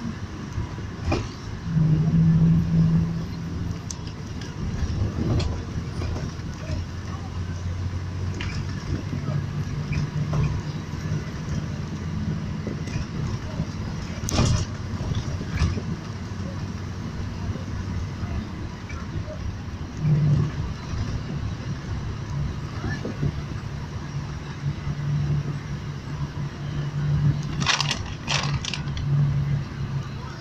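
Road noise of a moving car heard inside the cabin: a steady low drone of engine and tyres, with a low hum that swells and fades. A few sharp knocks or clicks, one about halfway through and a cluster near the end.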